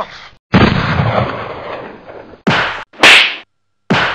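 Staged play-fight noises: about two seconds of scuffling, then two sharp, loud whacks about half a second apart, cut off suddenly.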